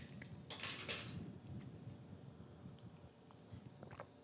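Metal spoon stirring a drink in a glass, clinking and scraping against the glass for about a second near the start as it stirs up sugar settled on the bottom.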